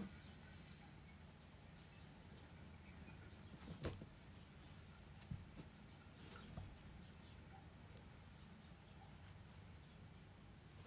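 Near silence: room tone with a few faint, short rustles and clicks of yarn being drawn through a crochet flower with a needle.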